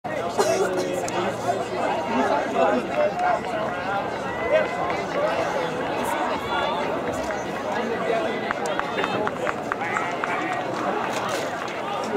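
Track-meet spectators' voices: a steady babble of several people talking and calling out at once, with a few short sharp knocks or claps near the end.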